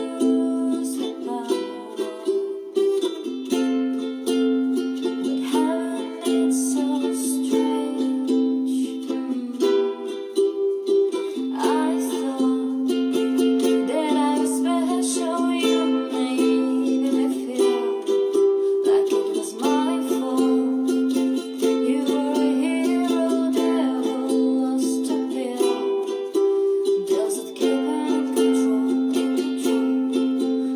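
A ukulele being strummed, its chords held and changing every few seconds, with a woman singing a slow song over it.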